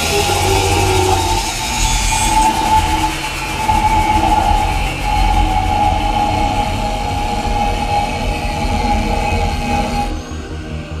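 Cordless angle grinder cutting through the steel shell of a hermetic refrigeration compressor, running with a steady whine under load.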